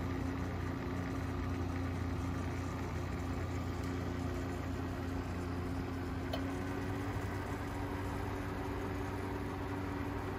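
A steady, low mechanical hum from running lab equipment, with a faint single tick about six seconds in.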